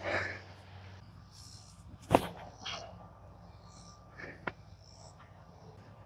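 A man's breathy exhale or sigh near the start, then a few faint clicks and rustles, with a low hum in the background.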